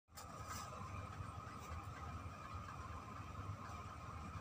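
Faint steady background hum with a thin high tone running through it, and a few faint clicks in the first two seconds.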